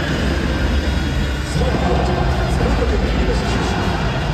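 Stadium public-address announcer calling out a player in the starting lineup over loud lineup music, echoing through the domed ballpark.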